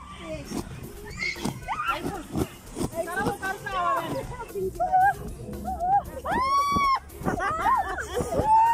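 Young women's excited voices laughing and squealing, with one long, high squeal a little past six seconds in, over loud music playing in the background.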